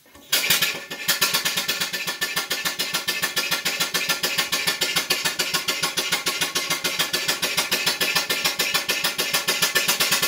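Full-size marine steam engine running steadily with a rapid, even exhaust beat, starting about a third of a second in. It is being run with oil let into the cylinder to clear condensed water and stop corrosion inside, and its exhaust is still moist.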